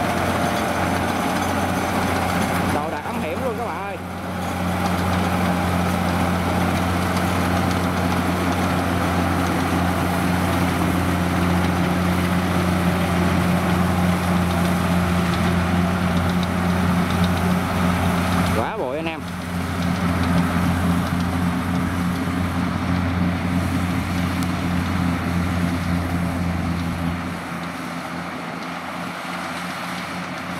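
Rice combine harvester's diesel engine running steadily under load while cutting and threshing rice, a constant low drone that breaks briefly partway through and grows quieter near the end.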